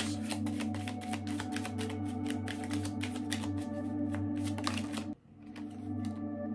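A tarot deck being shuffled by hand: a quick, dense run of crisp card clicks for about five seconds that stops suddenly. Under it plays steady ambient background music.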